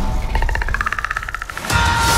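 Film trailer soundtrack. The score drops away and a fast, even run of clicks with a high tone plays for about a second and a half, then the loud full score cuts back in near the end.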